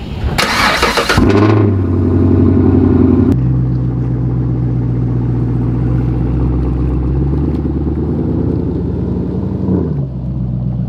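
Car engine starting: about a second of starter cranking, then it catches at a raised idle and drops to a steady lower idle about three seconds in.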